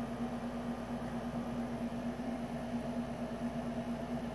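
Room air conditioner running, a steady hum with one constant tone over a low even hiss.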